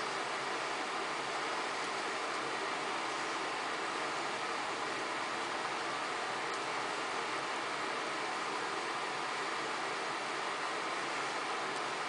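Arizer Extreme Q 4.0 vaporizer's fan running on low speed, a steady airy hiss as it blows hot air through the herb and into the vapor bag.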